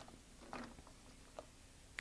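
Near silence, with two faint, soft knocks about half a second and a second and a half in.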